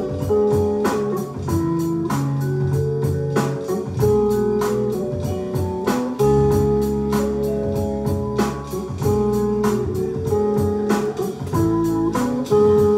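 Looped instrumental music from a vinyl record, layered on a loop pedal: a drum beat of about four hits a second under held bass and chord notes that change every second or two.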